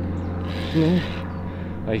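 A pause between a man's sentences, holding one short voiced hesitation sound just before the middle. A steady low hum runs underneath.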